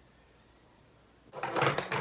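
Near silence, just faint room tone, for over a second; then a woman's voice cuts in abruptly and loudly near the end.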